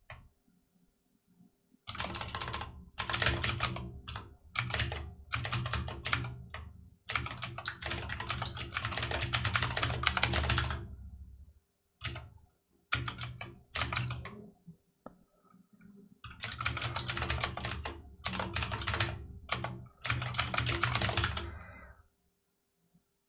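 Typing on a computer keyboard: fast runs of keystrokes starting about two seconds in, broken by a few short pauses.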